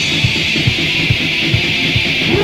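Lo-fi hardcore punk rehearsal recording: distorted guitar and fast drumming under a harsh, hissy wash of cymbals and noise, with no vocals in this stretch.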